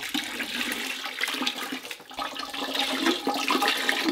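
Liquid ceramic glaze poured from a cup over a clay platter, splashing and trickling back into a bucket of glaze.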